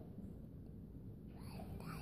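A small child's voice answering softly in a whisper, about one and a half seconds in, over quiet room tone.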